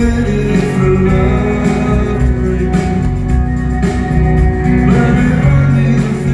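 A live rock band playing a song, with grand piano, electric guitars and drums, and a man singing over them.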